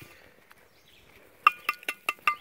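Several short, sharp metallic clinks in quick succession starting about a second and a half in, from a steel digging trowel and a dug-up piece of crushed aluminium pop can being handled.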